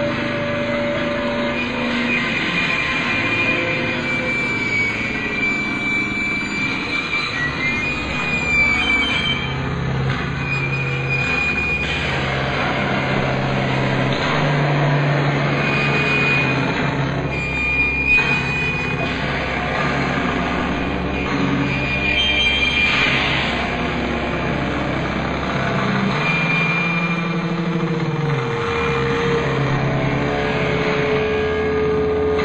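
Live noisy experimental rock: electric guitars and electronics in a dense, loud drone with no clear beat. A sustained low tone comes in about nine seconds in, and thin high tones come and go above it.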